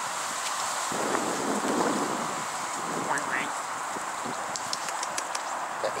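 Steady outdoor wind noise on the microphone, with a short rising high-pitched call about three seconds in and a few faint clicks near the end.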